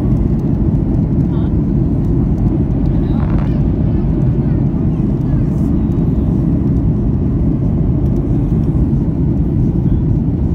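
Jet airliner cabin noise in flight, heard from a window seat: a loud, steady rumble with no change in pitch or level.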